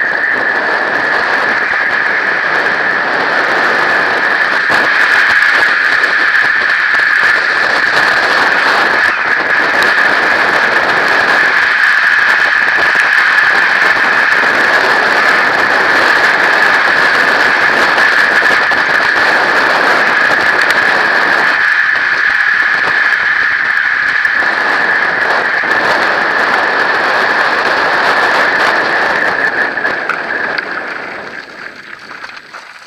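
Mountain bike descending fast over dirt and gravel: wind rushing over the bike-mounted camera's microphone and tyres rolling on the loose surface, with a steady high-pitched buzz throughout.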